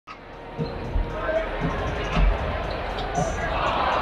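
Basketballs bouncing on a hardwood arena court: irregular deep thuds, the loudest about a second in and just after two seconds, over steady crowd chatter in a large hall.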